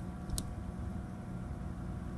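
A steady low mechanical hum, with a faint click about half a second in.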